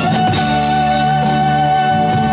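Live rock band music: an electric guitar holds one long lead note, slightly wavering, over a steady sustained low chord.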